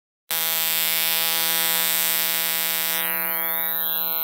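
Audio synthesized from a picture by an image-to-spectrogram converter, so that its spectrogram draws the image: a steady buzzing tone of many evenly spaced pitches with hiss above, starting suddenly a moment in.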